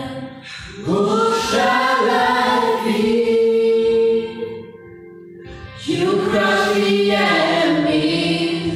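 A small group of voices singing a gospel song together into microphones, in long phrases with held notes and a short pause of about a second just past the middle.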